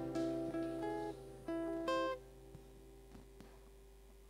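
Acoustic guitar playing the opening of a hymn: a short run of single picked notes in the first two seconds, which then ring out and fade.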